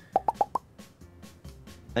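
Four quick cartoon 'plop' pop sound effects in the first half-second, each a short upward-gliding bloop, over faint background music.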